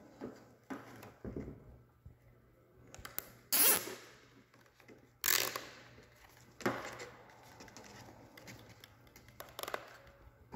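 Plastic zip tie being pulled tight through its ratchet around a fuel line, in a few short rasping zips, with light clicks from handling the part.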